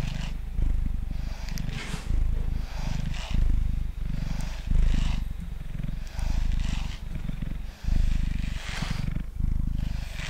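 Domestic cat purring loudly right at the microphone, the purr swelling and dipping with each breath in and out. Over it, a hand-held grooming brush strokes through the fur with a soft scratchy swish about once a second.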